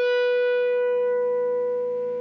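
A single overdriven electric guitar note held and left to sustain, slowly fading. It is an Ibanez RG-370DX with Seymour Duncan Distortion Mayhem pickups, played through a Wampler Tumnus Deluxe overdrive set for high gain into an amp's clean channel.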